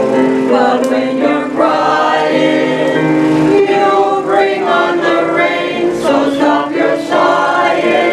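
Choral music: a choir singing long notes in chords that change every second or so.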